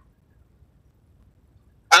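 Near silence: a pause in a man's speech with only faint low background hum. His voice comes back right at the end.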